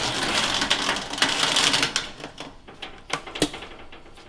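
Metal heater carriage of an industrial vacuum former rolling forward on its rails, a dense rattling clatter for about two seconds, followed by a few separate sharp metallic clicks.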